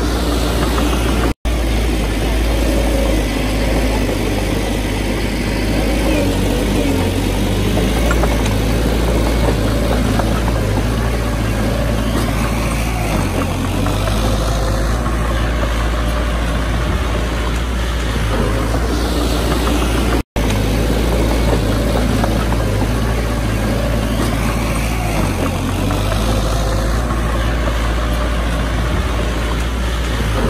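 Small crawler bulldozer's diesel engine running steadily as the dozer pushes a pile of soil forward. The sound cuts out for an instant twice, once early and once about two-thirds of the way through.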